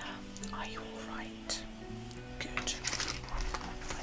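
Quiet background music with long held notes that change pitch in steps, under faint muttering or whispering and a few soft clicks.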